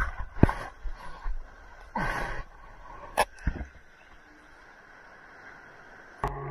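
Water sloshing and splashing around a surfboard in whitewater, heard from a camera mounted on the board: a few sharp knocks and a brief rush of water in the first half, then a faint steady hiss of foam.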